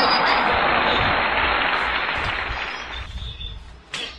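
Applause: dense, even clapping that dies away about three seconds in.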